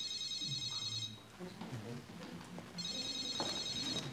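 A phone ringing with an electronic ringtone: two rings, each about a second long, with a short gap between them.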